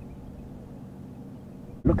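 Game-drive vehicle's engine idling: a low, steady rumble with a faint hum.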